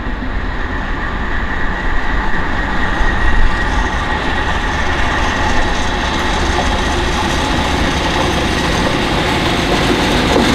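English Electric Class 37 diesel locomotive running under power as it approaches and passes, its engine noise growing steadily louder, with a steady high whistle over it.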